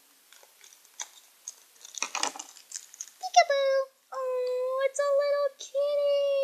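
Light clicks and crinkling as a small plastic toy and its packaging are handled. About three seconds in, a voice starts singing long, steady held notes on nearly one pitch, with short breaks between them.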